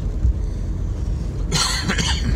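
Steady low rumble of road and engine noise inside a moving van's cabin, with a man coughing once about one and a half seconds in.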